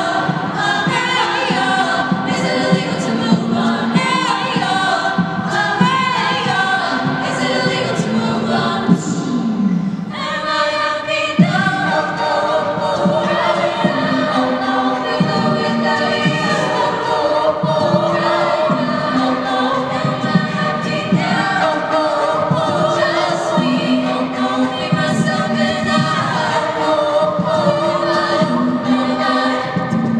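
All-female a cappella group singing a pop arrangement in close harmony, with sustained backing chords under the melody and vocal percussion keeping a steady beat.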